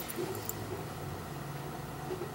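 Quiet room tone: a steady low hum, with a couple of faint small clicks near the start, as of light handling.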